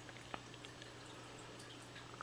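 Faint fish-tank water sounds: light drips and trickle over a steady low hum, with a small tick about a third of a second in.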